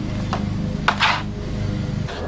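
A small trowel scraping and knocking on a plastic tray as dry sand and mortar are stirred together: a sharp click about a third of a second in and a longer scrape around a second in. A steady low hum runs underneath.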